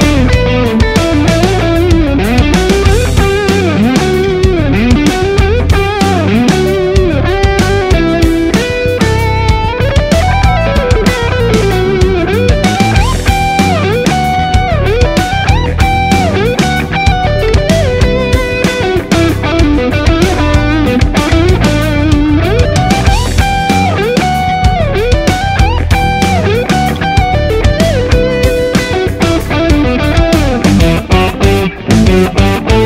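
Ibanez electric guitar playing a melodic lead line with string bends and slides, through effects with light distortion, over a full backing track with drums.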